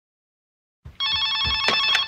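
Telephone bell ringing: a rapid, trilling ring of several tones that starts about a second in, with a dull thump and a click alongside.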